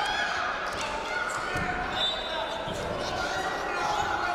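Indistinct shouting voices echoing in a large hall, with a couple of dull thumps as two wrestlers grapple and go down onto the mat.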